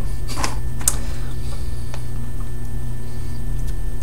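Steady low hum of background room noise, with a few brief soft clicks or rustles in the first second.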